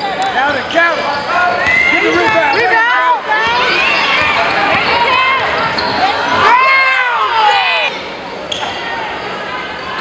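Basketball game sounds in a gym: sneakers squeaking on the hardwood floor again and again, with a long squeal about two-thirds of the way through, among ball bounces and shouting from players and the crowd, all echoing in the hall.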